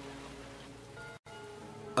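Soft, steady background music, a sustained pad of held tones, heard in the pause between narrated verses. It drops out completely for an instant just over a second in.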